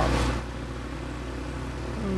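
A steady low engine hum in the background, running at an even speed, after a voice trails off in the first half-second.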